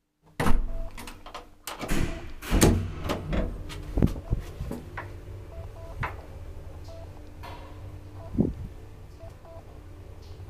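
Old 1963 Kone traction elevator setting off: a burst of clanks and clicks as the door shuts and the controls engage, then a steady low hum as the car travels. Occasional clicks sound over the hum, with a louder knock shortly before the end.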